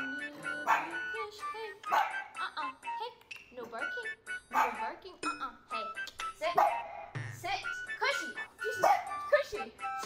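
Acoustic guitar being strummed and picked while a woman sings along, with short animal calls mixed in.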